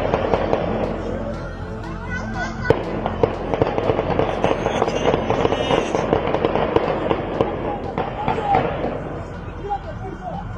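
Rapid gunfire, many sharp shots a second in irregular volleys: an exchange of fire between police and gunmen.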